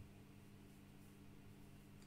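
Near silence: room tone with a faint, low, steady hum.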